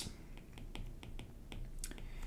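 Faint ticks and taps of a pen tip against a writing surface as a word is handwritten: several small, separate clicks spread unevenly over two seconds.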